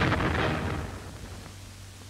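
A detonated sea mine exploding: a loud blast at its peak, fading away over about a second and a half.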